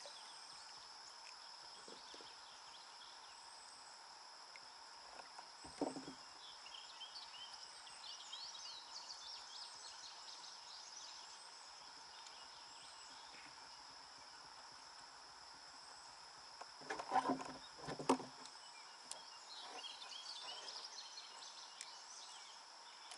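A few sharp knocks and thumps on a plastic kayak as a landed common carp is handled: one about six seconds in, then a quick cluster of several about three-quarters of the way through. Behind them a steady high insect drone and a few scattered bird chirps.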